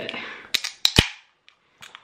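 Ring-pull tab of an aluminium drink can clicking under fingernails, then popping open with a sharp crack and a short hiss about a second in; a couple of faint clicks follow near the end.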